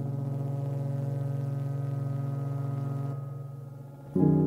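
A low synthesizer chord held as a steady drone, fading away in the last second.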